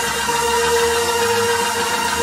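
Church organ holding one steady chord, with no beat under it.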